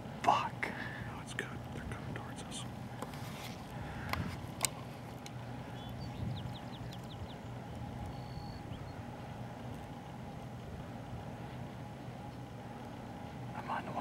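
Quiet outdoor background with a steady low hum throughout. There are brief low voices right at the start, a single sharp click about four and a half seconds in, and a faint run of high ticks around six seconds.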